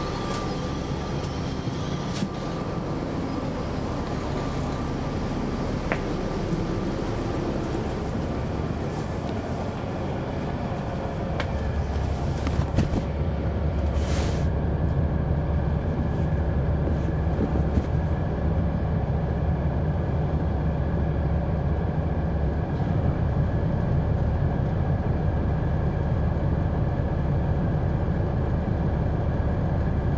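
Caterpillar C9 ACERT diesel of a 2004 Neoplan AN459 articulated transit bus, heard from inside the cabin: a steady low engine drone that grows louder about eleven seconds in as the engine works harder, with a brief hiss a couple of seconds later.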